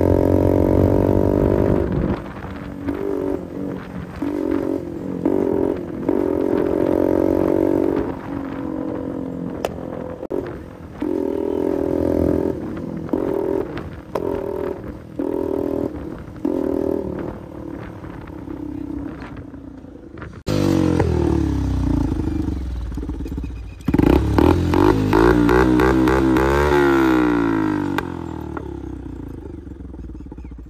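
Bajaj Platina motorcycle fitted with an aftermarket SC Project-style silencer, its engine running and being revved. In the last third the revs rise and fall repeatedly.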